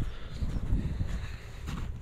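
Low rumble of wind and handling noise on a handheld camera's microphone while the wearer walks, with a faint click near the end.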